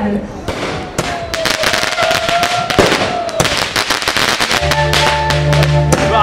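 Rapid, dense crackling pops, with a single held note over them, then music with a steady bass line starting about four and a half seconds in.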